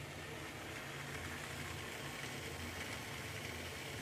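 A steady low mechanical hum with a faint hiss over it, even throughout.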